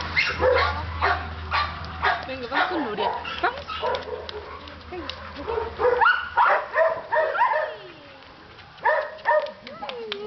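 Dogs barking and yipping in short, repeated calls, with the thickest run of barks a little past the middle and another burst near the end.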